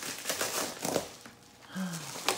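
A padded paper mailer crinkling and rustling in irregular bursts as a dog chews and paws at it, easing off after about a second. Near the end, a brief low vocal sound.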